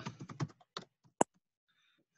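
Computer keyboard typing a word: a quick run of keystrokes, then a few spaced taps ending with one sharper keystroke a little after a second in.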